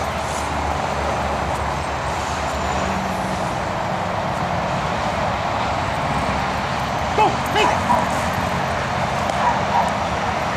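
A dog barking, about three short barks a little past the middle and two more near the end, over a steady background rush of noise.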